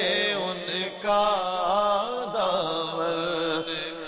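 A male voice singing an Urdu devotional song in long, drawn-out phrases, the pitch sliding up and down between notes, with two brief breaks for breath.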